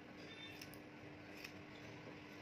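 A few faint snips of hairdressing scissors cutting short hair, short sharp clicks about half a second and about a second and a half in, over a low steady hum.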